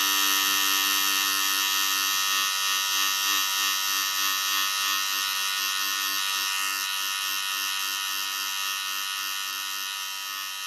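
Electric hair clipper running steadily with a continuous buzz as it cuts close-cropped hair on the scalp, easing slightly in level near the end.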